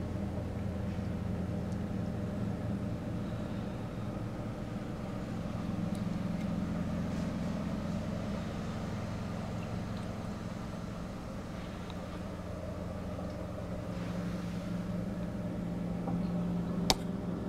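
A steady low hum with a pitched drone, of aquarium equipment running.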